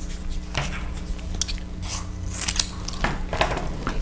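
Paper masking tape being pulled off its roll and cut, a scatter of small crackles and clicks.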